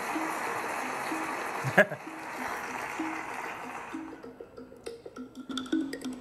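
Audience applause, loud for the first couple of seconds and then thinning, over backing music made of short repeated notes.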